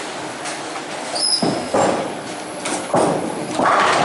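Bowling alley din: balls rumbling down the wooden lanes and pins clattering, with several sharp crashes in the second half. It gets louder toward the end. A short high squeak sounds about a second in.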